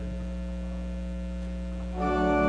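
Steady electrical mains hum: a low, unchanging drone of several stacked tones.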